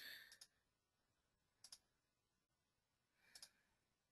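Faint computer mouse clicks, three short press-and-release clicks about a second and a half apart, against near silence.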